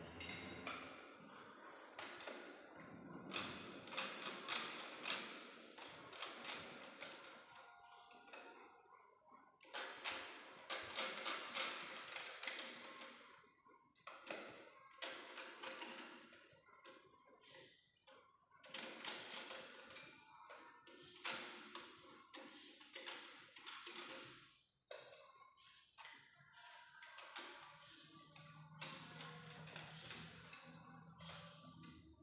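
Scattered light taps and metallic clinks of hand tools working on a car engine, at a low level, coming irregularly throughout.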